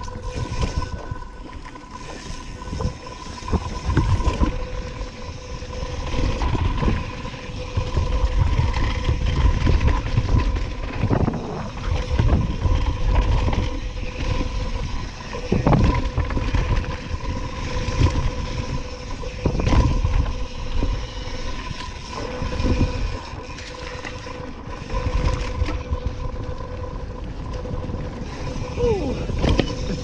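Mountain bike descending a dirt trail at speed: wind rush on the helmet camera and knobby tyre noise rise and fall with speed, broken by short knocks and rattles as the bike goes over bumps, over a faint steady hum.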